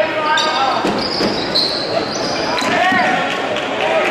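Live basketball game on a hardwood gym floor: a ball bouncing and sneakers squeaking in short, high chirps as players cut and stop, with voices calling out in the gym.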